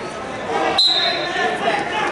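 Voices calling out across an echoing gym, with a short, high referee's whistle blast a little under a second in as the wrestling bout starts.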